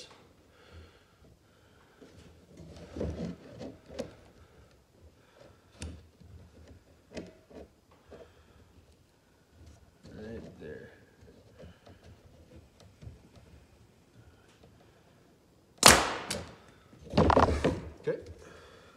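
Pneumatic brad nailer driving 2-inch brads into a pine frame joint. There are light clicks and knocks of the tool and wood being handled, then two loud shots near the end: a sharp crack, and about a second later a longer, louder burst.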